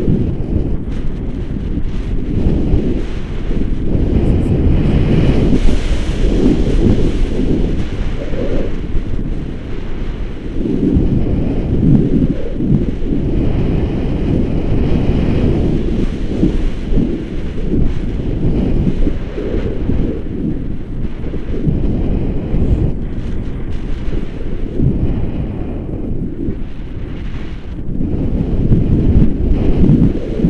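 Wind buffeting a camera microphone during paraglider flight: a loud, gusting low rumble that swells and eases, dipping about ten seconds in and again a few seconds before the end.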